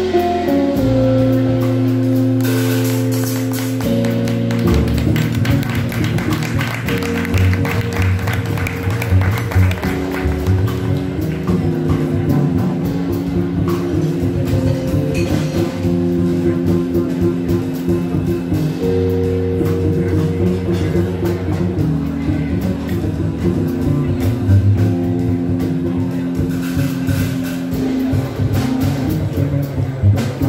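Small jazz band playing live: a Nord electric keyboard holding sustained chords, a hollow-body electric guitar, double bass and drum kit, in a steady groove.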